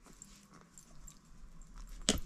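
Faint small clicks and rustles of a loom-knitting hook tool and yarn working loops over the pegs of a round knitting loom.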